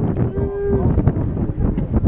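A single drawn-out "ooh" from a spectator, held on one steady pitch for about half a second and dipping at the end, as a humpback whale lifts its tail clear of the water. Under it runs a constant low rumble of wind and water.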